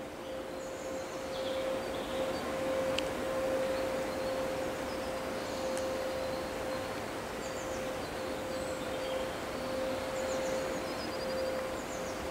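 Outdoor ambience: a steady rushing noise with a few faint high bird chirps, over a constant mid-pitched hum.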